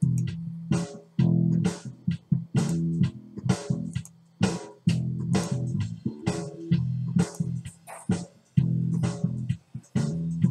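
A bass guitar riff playing back with an EZdrummer 2 drum-kit groove auditioned in time with it. Drum hits keep a steady beat, about two a second, over the bass notes.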